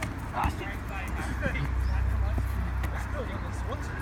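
Voices of people playing football outdoors, calling out indistinctly, over a steady low rumble. A football is kicked with a short thud about half a second in.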